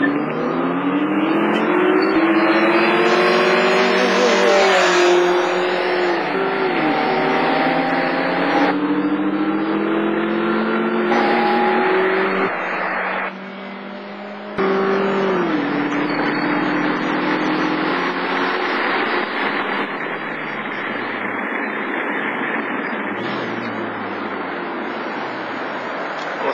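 Honda four-cylinder car engine heard from inside the cabin under hard acceleration: its pitch climbs through each gear and drops at every upshift, several times over.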